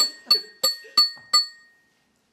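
A glass being tapped repeatedly in an even rhythm, about three clinks a second. Each clink leaves a clear, high ring. The tapping stops a little after a second in, and the ringing dies away soon after.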